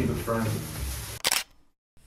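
People's voices talking and fading out over the first second, then a single short, sharp click-like sound about a second and a quarter in, as the scene cuts away.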